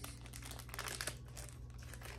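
Plastic packaging bag crinkling as it is handled: a dense run of small crackles, busiest in the first second.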